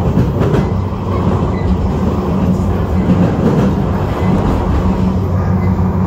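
Passenger train running steadily, heard from inside the carriage: continuous rail noise with a low steady hum.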